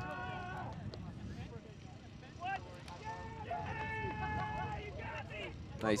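Long, drawn-out shouts from players on an ultimate frisbee field, cheering just after a score. A steady low rumble runs underneath.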